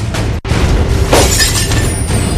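TV news 'breaking news' sting: loud music over a steady low drone, which cuts out for an instant about half a second in, then a sudden bright hit effect with a shimmering tail a little after a second in.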